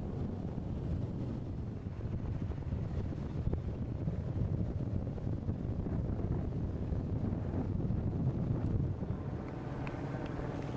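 Wind buffeting an outdoor microphone: a low, gusty rumble that rises and falls.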